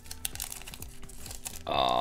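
Foil wrapper of a Pokémon booster pack being torn open and crinkled by hand, a run of small crackles. Near the end a man's voice comes in with a held sound.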